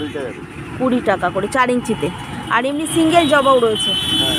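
People talking, over a steady background of road traffic.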